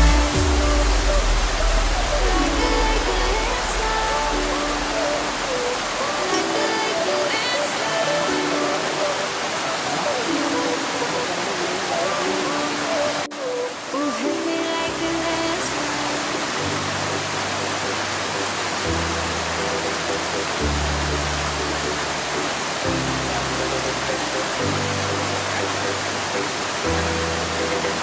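Steady rush of a waterfall at close range, with background music laid over it: held synth notes changing every second or two, and a deeper bass line that comes in about halfway through.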